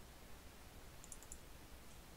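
Faint computer mouse clicks: a quick cluster of about four about a second in, and one more near the end, over low steady hiss.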